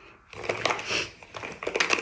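Makeup compacts and containers being handled and sorted through: a string of small clicks, knocks and rattles.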